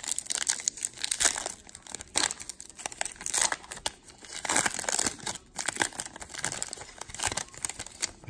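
A 2019 Bowman baseball card pack's foil wrapper being torn open and crinkled by hand: a dense run of crackles and rustles with a couple of short lulls.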